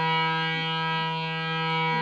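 Bina Flute harmonium holding a steady reedy chord over a sustained low note, with no change of notes.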